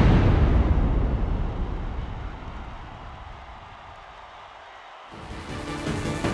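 A deep cinematic boom hit, a trailer-style impact effect in the soundtrack, dying away slowly over about four seconds. Electronic music cuts in about five seconds in.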